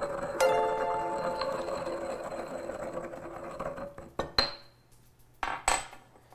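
Salt being crushed in a small white ceramic mortar with a pestle, followed near the end by a few sharp ceramic clinks. About half a second in, a short ringing chime of several tones sounds and fades over about a second.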